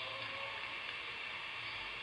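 Steady background hiss with a faint low hum: room tone, with no distinct sound events.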